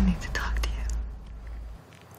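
A breathy, whispered voice with a short voiced sound at the start, over a deep low rumble that stops shortly before the end.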